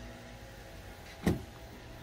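A single short thump about a second in, over a steady low hum.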